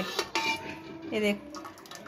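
Steel ladle clinking and scraping against the inside of a metal pressure cooker as cooked dal is stirred and scooped, several short metallic knocks.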